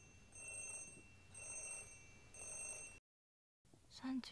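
An electronic ringing tone sounding three times, about once a second, each ring a cluster of high steady beeps; it is cut off abruptly about three seconds in.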